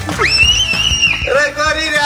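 A child's high-pitched shriek lasting about a second, then a lower, drawn-out cry that falls away, with music underneath.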